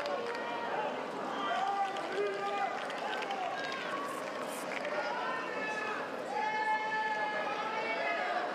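Tennis spectators shouting and cheering, many voices overlapping, with one long held shout near the end.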